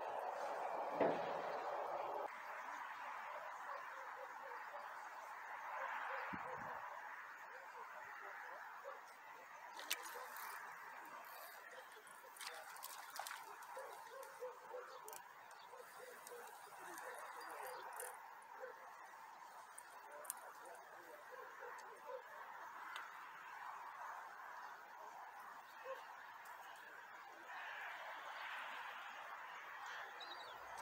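Faint, steady outdoor background noise with scattered small clicks and ticks and one sharper knock about a second in.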